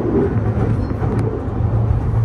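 Tokyu new 5000 series electric train running along the track, a steady low rumble of wheels on rails heard from inside the front car.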